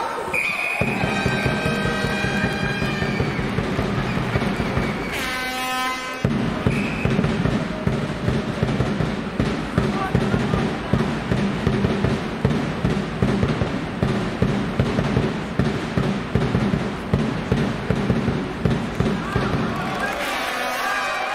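Background music with a steady beat, voices heard over it. A short, high whistle sounds about half a second in.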